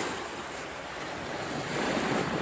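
Wind rushing over the microphone outdoors, a steady hiss that swells slightly near the end.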